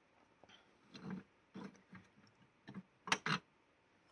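Faint knocks and clicks of stone meteorite specimens and their acrylic stands being handled on a wooden shelf, with two sharper clicks about three seconds in.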